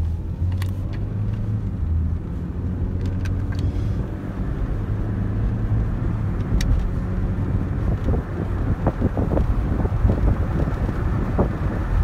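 Car running, heard from inside the cabin: a steady low engine and road rumble with a few light clicks. Uneven low thumping builds in the second half.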